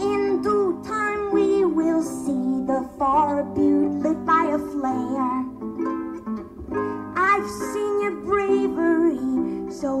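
Solo harp played live, plucked notes and chords ringing on, with a woman's voice singing gliding, wavering phrases over it.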